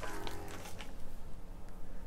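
Faint background noise from neighbours' activity: a low steady rumble, with a faint pitched tone through about the first second.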